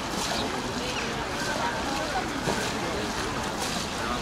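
Indistinct voices talking over steady outdoor wind and water noise.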